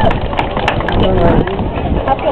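Background voices of an outdoor crowd murmuring during a pause in a speech, with scattered sharp clicks and a steady low rumble.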